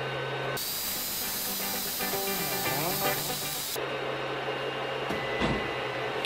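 CR-10 Mini 3D printer humming steadily while it reheats after power is restored. About half a second in, the hum gives way for about three seconds to a brighter, abruptly spliced stretch of gliding, bending tones.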